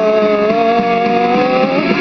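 Heavy rock music: a long held note, likely a distorted guitar or voice, that slowly rises in pitch and drops away near the end, over a dense guitar backing.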